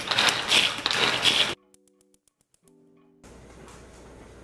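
Hand-pressed food chopper mincing garlic, its plunger pumped rapidly to give a fast clattering, ratcheting run of clicks that stops abruptly about a second and a half in. Faint music tones and low room hum follow.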